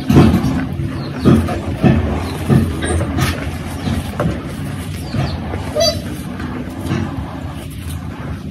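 Hands squeezing and crumbling a pile of reformed gym chalk powder: a series of crunches, several in the first three seconds, over steady traffic noise, with a short vehicle horn toot about six seconds in.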